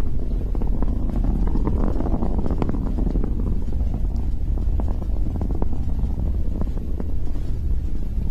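Falcon 9 first stage's nine Merlin engines heard from the ground as a steady deep rumble with irregular crackling running through it.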